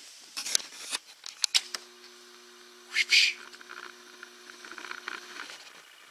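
An arrow is shot from a handmade Osage-and-bamboo bow at a 3D deer target. A few light clicks of arrow handling come first, then a short sharp burst about three seconds in as the arrow is loosed and strikes. A steady low hum runs under it from about two seconds in until past five.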